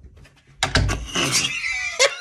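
A man bursts into loud, high-pitched laughter about half a second in, after a brief hush.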